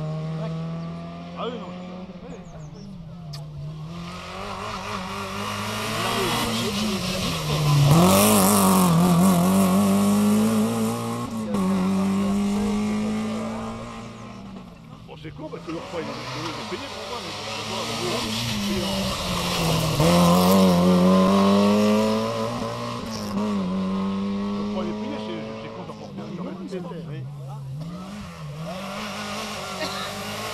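Several small four-cylinder rally cars, Peugeot 106s among them, driving hard one after another. Each engine revs up and drops back with the gear changes, rising in loudness as a car comes close and fading as it goes by. The loudest passes come about 8 and 20 seconds in.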